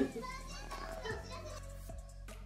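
Voices talking in a small room over a steady background music track; the voices die away in the second half, leaving the music.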